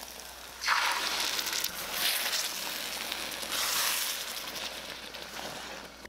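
Tomato wedges and scrambled eggs sizzling in a hot wok: the frying starts suddenly just under a second in, swells and eases a couple of times, and dies down toward the end before cutting off.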